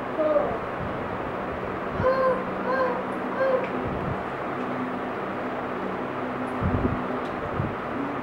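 A child voicing three short, evenly spaced animal-like calls, then a few dull thumps later on, over a steady low hum.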